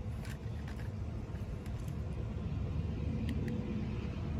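A steady low outdoor rumble, with a few faint ticks.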